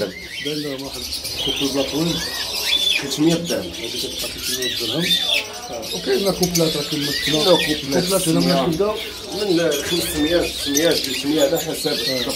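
Caged songbirds and parakeets chirping and calling, many short rising-and-falling chirps overlapping, with people talking in the background.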